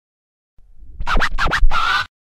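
Turntable scratching in a short intro sting: a faint low rumble, then four quick back-and-forth scratches about a second in, followed by a held tone near the end.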